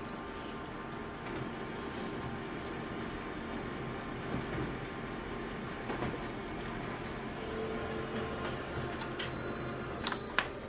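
Colour laser photocopier running a full-colour copy job: a steady mechanical whir, with a couple of clicks near the end as the page comes out.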